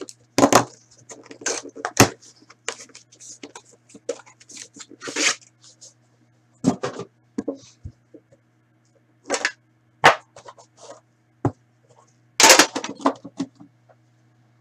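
Hands handling a cardboard trading-card box and the pack inside it: irregular scrapes, rustles and sharp taps. The loudest knock-and-rustle comes shortly before the end, when the box is set down. A faint steady low hum runs underneath.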